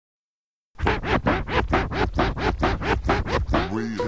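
Turntable record scratching: a sample dragged back and forth on vinyl in quick, even strokes, about five or six a second. It starts just under a second in and ends in one slower drawn-out glide.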